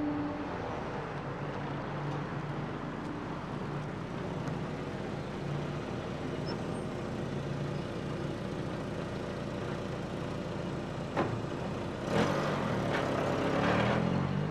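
Street traffic with a car engine running at idle. A sharp click comes about eleven seconds in, then the engine grows louder near the end as a taxi pulls away.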